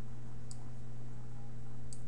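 Two light clicks about a second and a half apart, typical of a computer mouse button, over a steady low hum.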